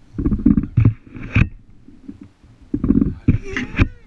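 Wind buffeting a GoPro microphone riding on a moving baby swing, in two long low gusts as the swing goes back and forth, with short knocks mixed in. Near the end a baby gives a high laughing squeal.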